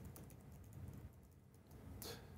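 Faint typing on a computer keyboard: a quick run of keystrokes, mostly in the first second.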